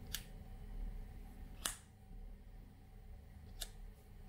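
Three faint, sharp clicks of a tactical flashlight's push-button tail switch being pressed as the light is tested with a new battery; the middle click is the loudest.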